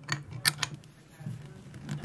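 A few light metallic clicks and taps of tools being handled at a lathe chuck, the sharpest one near the end, over a faint low hum.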